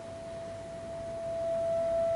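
Clarinet holding one long, pure note that swells slowly from very soft, growing fuller and richer near the end.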